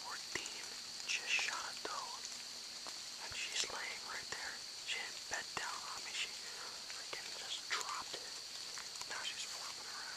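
A person whispering in short phrases throughout, over a steady high-pitched hum.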